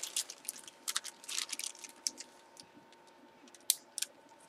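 Plastic bag around a baseball jersey being handled, giving soft scattered crinkles and rustles, with one sharp click near the end.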